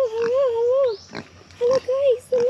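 A young pig making a long, wavering, pitched whine that breaks off about a second in and starts again briefly near the end, over short crackles of footsteps in dry leaf litter.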